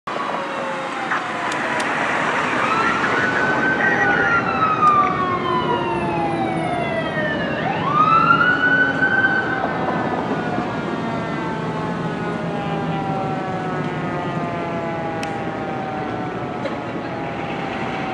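Fire engine siren wailing: it winds up, slides down over a few seconds, winds up again quickly about eight seconds in, then falls slowly for the rest of the stretch. Traffic noise runs underneath.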